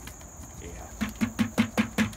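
Dried luffa gourd shaken and knocked down into a plastic bucket to dislodge its last seeds: a rapid, even run of knocks, about five a second, starting about a second in.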